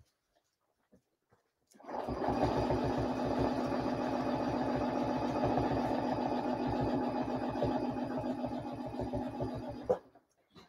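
Sewing machine free-motion quilting with a ruler foot along a clear template. It is silent for about two seconds, then stitches steadily at a fast, even rate and stops at the very end.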